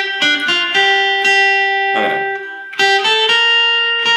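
Acoustic guitar playing a slow melody in single picked notes on the high strings, each note left ringing into the next.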